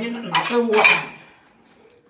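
Dishes and cutlery clattering as they are washed at a kitchen sink, with two louder clanks in the first second.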